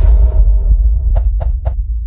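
Outro logo sting sound effect: a deep bass boom that rumbles on and slowly fades, with three quick clicks a little over a second in.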